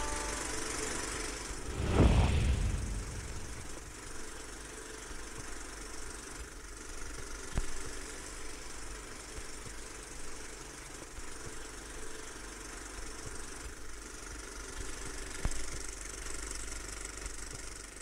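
Steady low mechanical running noise with hiss and a few faint clicks, with one brief, louder low rumbling swell about two seconds in.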